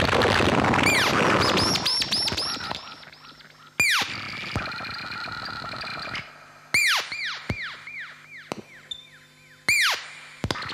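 Ciat-Lonbarde and modular synthesizer noise patch: a dense crackling noise texture fades out over the first three seconds, giving way to sharp falling electronic zaps. Three times a loud zap sets off a run of quicker, fainter falling chirps that trail away, over a faint low hum.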